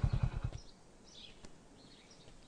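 A small engine running with an even low putter that dies away about half a second in, followed by a few faint bird chirps.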